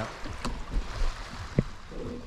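Shallow seawater sloshing and lapping around a camera held at the water's surface, with wind on the microphone and a couple of small knocks, the sharper one about one and a half seconds in.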